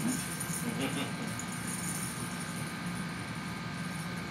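Room tone: a steady low hum with a brief faint voice about a second in.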